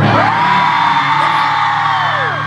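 Fans in a concert crowd screaming in answer to the drummer's question. One high scream rises at once and is held for about two seconds, then falls away at the end, over a steady low hum from the stage.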